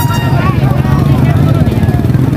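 A motorcycle engine running steadily close by, with people talking over it.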